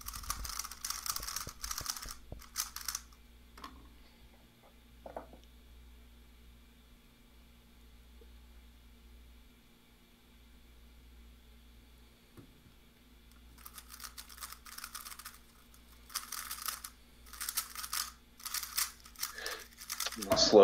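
3x3 speedcubes being turned fast by hand: a dense clicking clatter of plastic layers, in a burst over the first few seconds and again through most of the second half while a timed solve runs.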